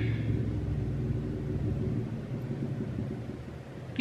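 Motor vehicle engine running with a low rumble, fading away over the few seconds.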